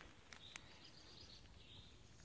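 Near silence: quiet outdoor ambience with a faint, distant bird calling, a high thin sound lasting about a second in the middle.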